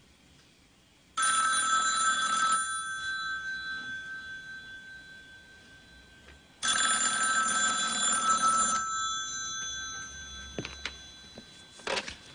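Telephone bell ringing twice, each ring lasting a second or two and dying away after it. A few sharp clicks follow near the end.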